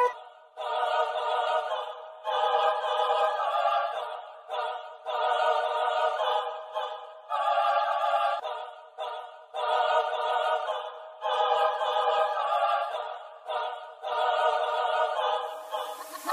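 Background music: a thin, bass-less choir singing in short phrases of about a second each, separated by brief gaps, with a rising hiss near the end.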